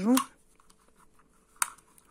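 A single sharp click about one and a half seconds in, from a small plastic retractable tape measure as its tape is pulled out.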